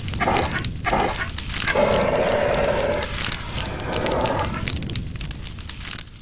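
Fire sound effect, with crackles, and a hissing fire-extinguisher spray as the blaze is put out. A long pitched, wavering sound runs through the middle for about two and a half seconds.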